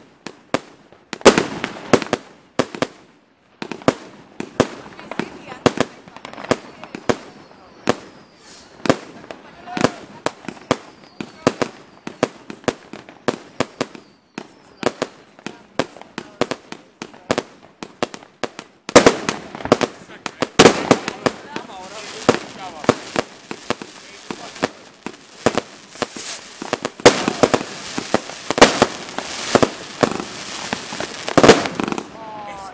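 Fireworks going off in quick succession: sharp bangs and crackling bursts of aerial shells. The bangs come thicker and louder from about two-thirds of the way in.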